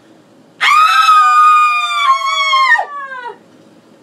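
A long, high howl that starts about half a second in, holds its pitch with a slight sag, then slides downward and dies away.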